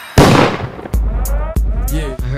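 A single loud bang, the loudest thing here, dying away over about half a second. About a second in, a hip-hop beat with heavy bass starts, with a rapped vocal over it.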